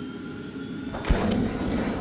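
Logo-intro sound effects: a rushing whoosh over faint held tones, with a deep hit about a second in.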